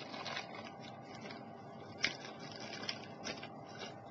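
Faint handling noise of objects being moved: light rustling with a few scattered clicks, the sharpest about two seconds in.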